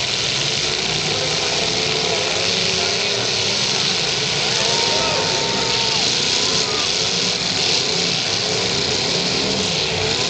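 Several demolition derby cars' engines running together as the cars shove into one another, a steady loud din with crowd voices mixed in.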